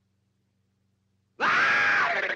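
Near silence, then about one and a half seconds in Daffy Duck's cartoon voice breaks out in a loud, shrill yell that holds one pitch. It is the start of an outraged outburst.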